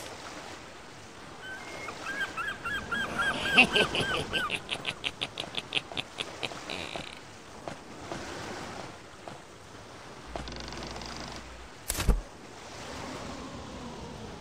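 A gull calling: a run of about ten falling, honking calls, then a faster string of short calls about five a second. A single sharp thump comes near the end.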